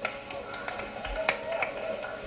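A few light taps and a soft low thump: footsteps shifting on an interlocking foam floor mat.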